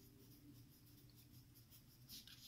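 Faint scratching of a pen writing a word in capitals on paper, a quick run of small strokes.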